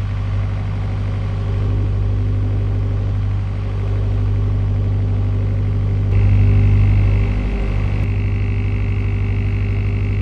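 A narrowboat's diesel engine running steadily under way, its firing heard as an even low throb. About six seconds in, the engine sound swells for a second or so and a steady higher hum joins it.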